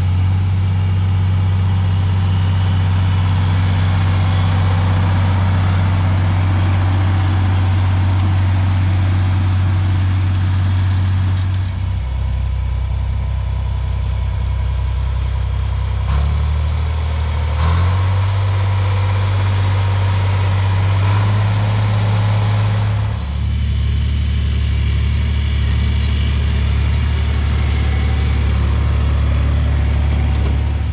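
John Deere 4020 tractor's six-cylinder engine running steadily under load while pulling a six-row corn planter. Its low hum shifts in pitch several times, around the middle and again about three quarters of the way in.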